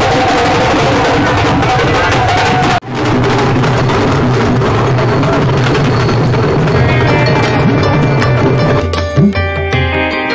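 Loud drumming over a dense crowd din, cutting out for an instant about three seconds in. Near the end it gives way to melodic music with steady held notes.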